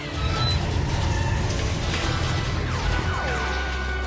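Orchestral action score under fight sound effects: hits and scuffles, with a few quick falling zaps of blaster fire about three seconds in.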